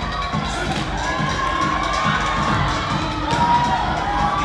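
A crowd cheering and shouting, with long high-pitched shouts each held for about a second, the loudest near the end.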